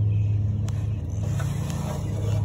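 A steady low mechanical hum from a running motor, with a faint click about two-thirds of a second in.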